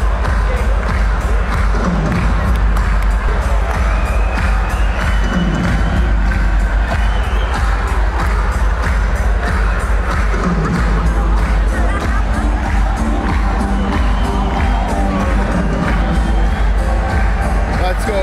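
Crowd noise in a hockey arena, with fans cheering and shouting and music playing throughout.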